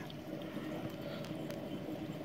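Steady, quiet running noise of a reef aquarium: water circulating and a faint pump hum.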